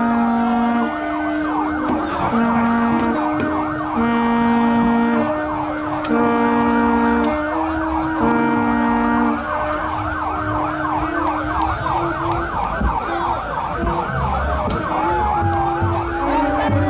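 Police siren yelping, its pitch swinging up and down quickly and continuously. Over it are long steady tones, each about a second long, repeated every couple of seconds through the first half and shorter afterwards.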